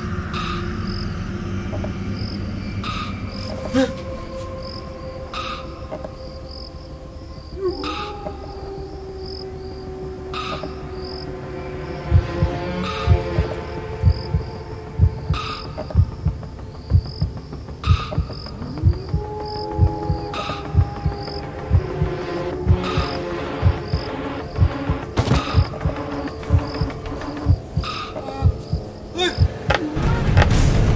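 Horror film soundtrack: a low drone with slow sliding tones and a faint high chirp repeating about twice a second. From about twelve seconds in, a regular low thudding pulse like a heartbeat joins it. A man gasps once near the start.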